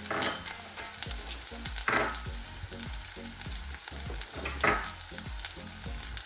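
Chopped onions, garlic, ginger paste and green chillies frying in hot oil in a metal pan, a steady sizzle with three brief louder swells: at the start, about two seconds in and near five seconds.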